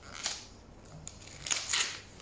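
Paper gift wrapping around a book being handled and pulled open, rustling and crinkling in two short bursts.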